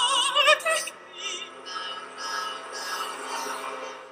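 Operatic soprano singing a high note with wide vibrato over an orchestra, the note ending about a second in while the orchestra and strings play on.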